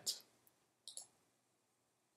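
Two faint mouse clicks in quick succession about a second in, in an otherwise near-silent room.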